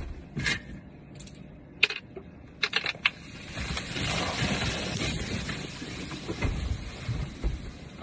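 A few sharp clicks and knocks of handling, then about three and a half seconds in a hissing, fizzing spray as Diet Coke foams violently out of a two-litre bottle, fading over the following few seconds.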